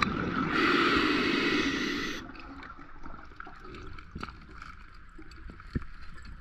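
Underwater, a diver's exhaled bubbles rush past the microphone, starting about half a second in and cutting off sharply under two seconds later. Afterwards there are only a few faint clicks.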